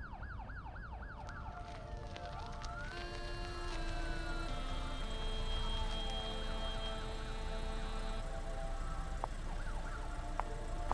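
Siren yelping in quick sweeps, about three a second, which stop a second or so in. A single slow wail then rises and falls over held steady tones, and faint yelps come back near the end.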